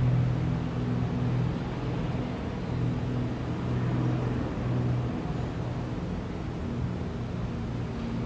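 A low, steady droning hum, its pitch fixed and its strength swelling and fading gently.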